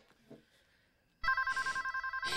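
Telephone ringing: a rapid warbling ring on two alternating pitches that starts just over a second in.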